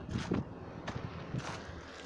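Footsteps and rustling in grass and gravel, a few irregular soft steps over faint outdoor background noise.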